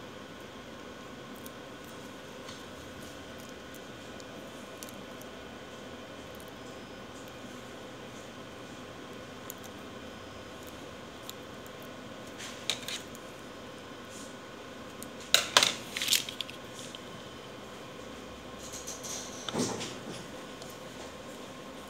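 Scattered small clicks and scrapes as fingers and a plastic pry tool work along the edge of an HP 245 G8 laptop's base cover, over a steady background hum. There is a short group of clicks about two-thirds of the way in, the loudest cluster a little later, and a few more near the end.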